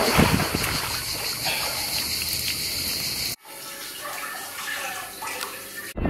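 Pool water splashing and running off a swimmer as he climbs out over the pool edge. About halfway through, the sound drops suddenly to a quieter background.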